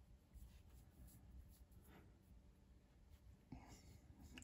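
Near silence: room tone with a few faint, soft rustles of hands handling hollow-core line on a latch needle.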